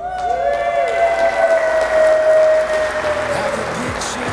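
Wedding guests applauding, starting all at once and loud, with one long high held tone sounding above the clapping for most of it.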